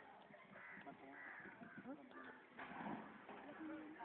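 Faint outdoor ambience of distant voices and short bird calls.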